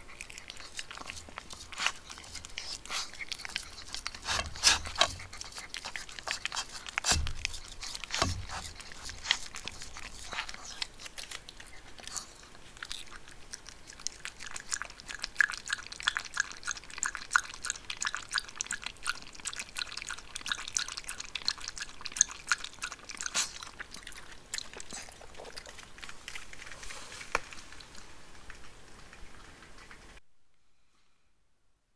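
Small maltipoo dog crunching and chewing dry food from a plastic bowl, with sharp irregular crunches. About halfway through, it laps water from a ceramic bowl with quick, evenly spaced tongue strokes.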